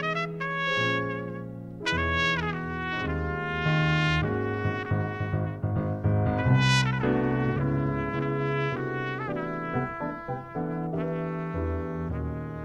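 Trumpet playing a melodic jazz line, several notes sliding in pitch, over keyboard chords and low bass notes.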